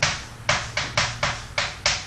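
Chalk on a chalkboard while writing: about seven short, sharp tap-and-scratch strokes in two seconds.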